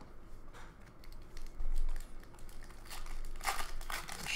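Hockey trading cards being slid and flipped against one another in the hands: light card-stock clicks and rustles, with a brighter cluster of snaps about three and a half seconds in.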